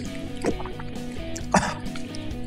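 Background music with steady held notes, with two short sounds about half a second and a second and a half in.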